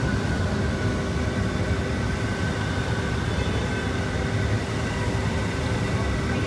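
Boondi batter frying in a wide pan of hot ghee, heard as a steady low rumble with a faint hum and hiss and no break.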